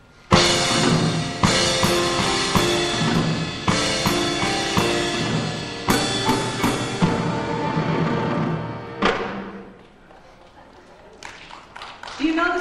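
Piano and drum kit playing live, a loud, dramatic instrumental fanfare of sustained chords accented by drum and cymbal hits about once a second. It starts suddenly, has a quick flurry of hits near the middle, and ends on a final hit about nine seconds in that rings away.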